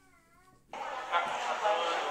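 A near-silent gap of under a second holding a faint wavering tone, then the indistinct talk of people in a room, which carries on to the end.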